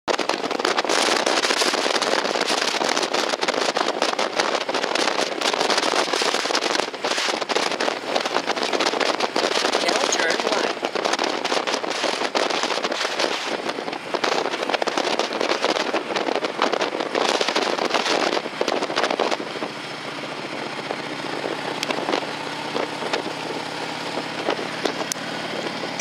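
Wind buffeting the microphone of a moving Harley-Davidson motorcycle, loud and crackling, with the engine running underneath. A little past two-thirds of the way through, the wind noise drops and leaves a quieter, steady engine drone.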